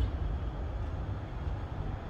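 Steady low rumble and faint hiss of outdoor background noise, with no distinct events.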